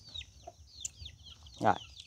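Birds chirping: a continuous stream of short, high chirps that slide downward, several a second, with a short spoken word near the end.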